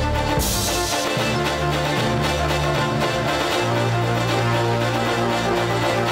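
Live instrumental music from a synthesizer keyboard and a violin, over sustained bass notes that change every second or two, with a bright crash about half a second in.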